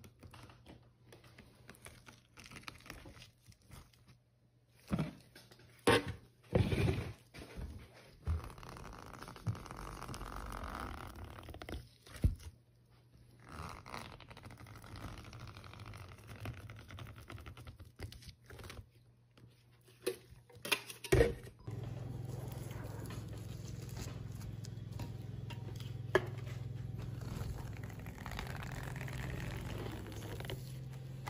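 Set wax being scraped and peeled out of a silicone honeycomb mold with a metal scraper and gloved hands: scraping and crunching with a handful of sharp snaps and knocks. Later a steady low hum runs under quieter crackling.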